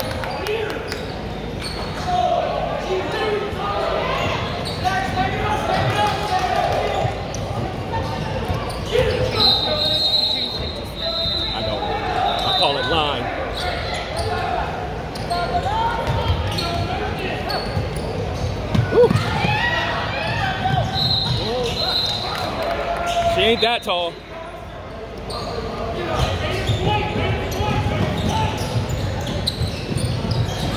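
Basketball game sounds in a gymnasium: a ball being dribbled on the hardwood court and sneakers squeaking, under steady crowd chatter and shouts.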